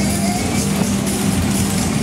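Loud music with a steady beat from a Mack Music Express ride's sound system, over the running of the ride's cars circling at speed.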